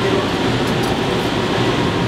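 Steady noise of running equipment, an even hum and hiss, with faint voices murmuring under it.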